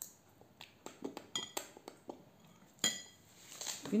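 A child's spoon clinking and scraping against a bowl while eating: a string of short, irregular clinks, a few with a brief ring, louder ones about a second and a half in and near three seconds.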